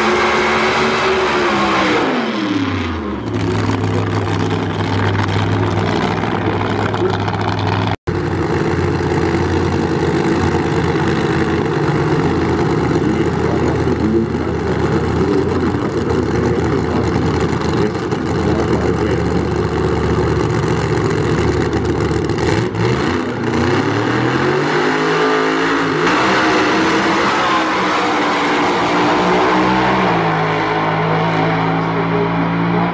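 Supercharged drag-racing Funny Car engine: revving down as a burnout ends, then idling steadily for some twenty seconds at the start line, and rising again in a hard rev from about three-quarters of the way through as the car launches down the strip.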